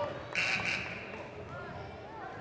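A short, shrill whistle blast of about half a second, a little after the start, over faint voices echoing in a gym.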